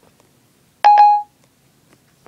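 iPhone 4S Siri chime: two quick electronic beeps about a second in. This is the tone Siri plays when it stops listening and starts working on a spoken question.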